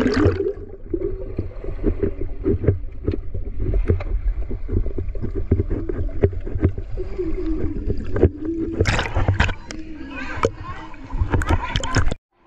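Swimming-pool water heard through an action camera held underwater: a muffled low rumble of moving water with many small knocks and bubbling clicks. Muffled voices come through the water, and a brighter rush of splashing noise swells about three-quarters of the way in.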